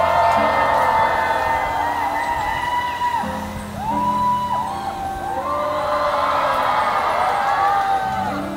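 Backing music with held chords playing under a crowd of fans calling out and cheering, with voices rising and falling over one another.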